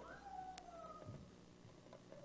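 Near silence: room tone in a pause of speech, with a faint, slowly falling tone in the first second.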